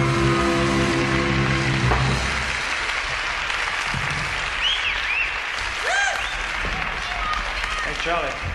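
A live band's final held chord fades out about two seconds in, giving way to audience applause with a few whistles and short shouts.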